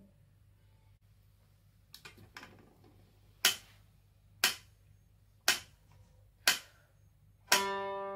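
A metronome ticks at 60 beats a minute, four sharp clicks a second apart, counting in. On the next beat, near the end, a bowl-back mandolin sounds its first plucked note, a low G on the G string, which rings on.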